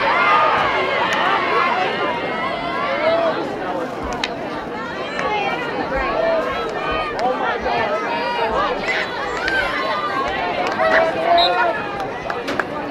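Many overlapping voices of spectators and players shouting and calling out during field hockey play, with a few sharp clacks of sticks hitting the ball, one about four seconds in and others near the end.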